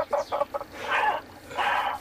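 A man laughing: a quick run of short laugh pulses, then two longer, breathy laughs.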